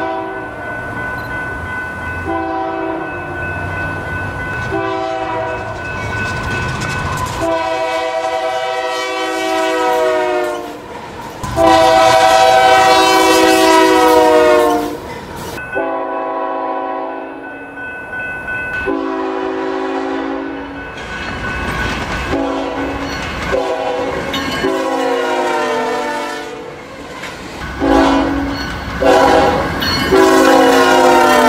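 Nathan Airchime K5HL (third generation) five-chime locomotive air horn sounding a chord in a series of short and long blasts. The loudest and longest blast comes about halfway through.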